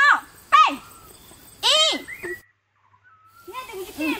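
Young women's voices calling out in three short, high-pitched, arching exclamations in the first two seconds, then the sound drops out completely for about half a second before softer voices and chatter resume near the end.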